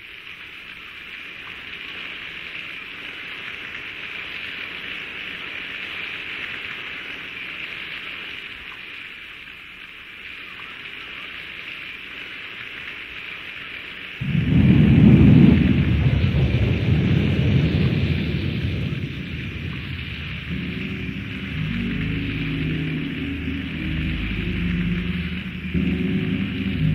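Thunderstorm sound effect opening a hip-hop track: a steady hiss of rain that slowly grows louder, a sudden loud roll of thunder about halfway through that rumbles away over several seconds, then low bass notes of the beat entering under the rain.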